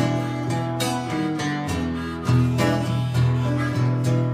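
Acoustic guitar strummed in a blues rhythm, with a harmonica playing held notes over it, in an instrumental break between sung lines.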